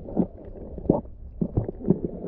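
Muffled underwater sound through a submerged camera: a steady low rumble with about five dull knocks, the loudest about a second in.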